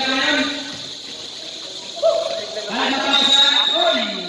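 People's voices talking and calling out, with no clear words.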